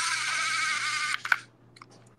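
Toy web shooter's electronic sound effect: a high-pitched, wavering tone lasting about a second that cuts off abruptly, followed by a short click.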